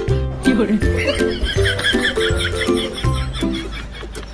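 Background music with a steady beat; over it, about a second in, a wavering, warbling call that rises and falls: the sound effect of a noisy toy ball shaken in front of a golden retriever.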